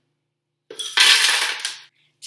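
Crushed ice poured from a cup into a plastic blender jar, a loud clattering rush that starts under a second in and lasts about a second.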